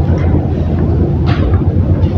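Steady low rumble of room noise in a pause between speech, with a short hiss a little past the middle.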